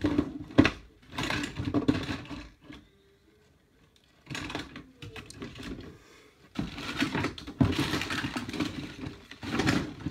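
Hands rummaging through fluffy bedding and plastic tubes in a hamster cage: rustling with many clicks and knocks of plastic, in spells with a short pause about three seconds in.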